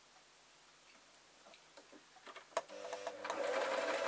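Singer electric sewing machine, set on a large stitch, starting up about two and a half seconds in after a sharp click and then running steadily as it stitches cotton fabric. Before it, only faint handling clicks.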